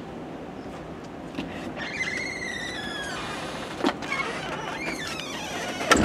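A creaky door swinging on its hinges: a long wavering squeal about two seconds in, then a shorter, fainter squeal, with a couple of knocks.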